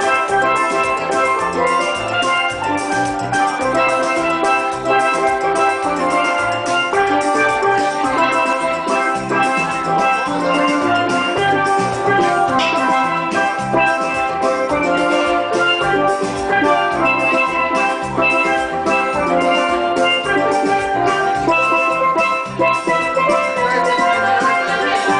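Steelband playing: steel pans ring out a bright melody and chords, struck in quick regular strokes, over a steady beat with a pulsing low part.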